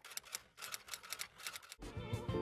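Typewriter key clicks as a typing sound effect, a quick run of light clicks at several a second. Music cuts back in just before the end.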